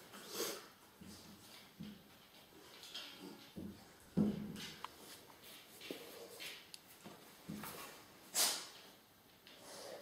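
Mostly quiet room sound with a few faint, brief handling noises as a handheld camera is moved, and a louder short whoosh about eight seconds in.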